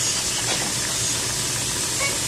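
Food sizzling steadily in a hot frying pan, a continuous hiss with no breaks.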